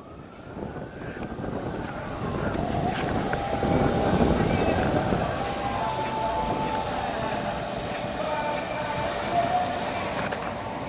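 Street traffic: a vehicle passing, building up to a peak about four seconds in and then easing to a steady rush.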